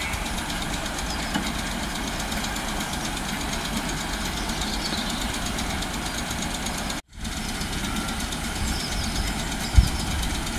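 Merseyrail Class 508 electric multiple unit running slowly into the platform and coming to a stand, a steady low rumble from its motors and equipment. The sound cuts out briefly about seven seconds in, and there is a short thump near the end.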